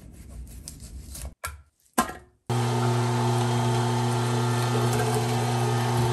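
A knife rasps through partly frozen meat on a wooden cutting board. About two and a half seconds in, an electric meat grinder starts and runs with a loud, steady motor hum as it grinds the meat.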